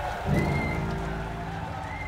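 Jazz combo's closing chord: a low accent with a cymbal crash just after the start, then the held notes and cymbal wash ring out and slowly fade.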